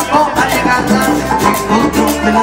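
Live salsa band playing an instrumental passage: congas, drum kit and hand percussion keep a steady beat under held brass lines.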